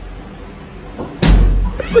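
A cat letting out one short, loud yowl about a second in.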